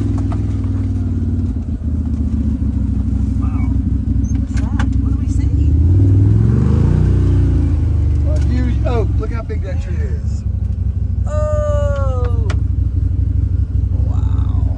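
Side-by-side UTV engine running steadily with a low drone as it drives along a trail, rising to a louder rev about six seconds in as it speeds up.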